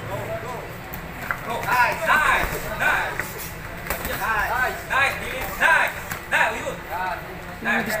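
Gym crowd and corner people shouting short, high-pitched calls again and again during a boxing bout, with a few brief sharp knocks among them.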